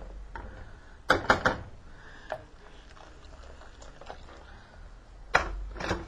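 Kitchenware clinking as hot water is handled at the stove: a quick run of clinks about a second in, another single clink a little later, and one more sharp clink near the end, over a faint low hum.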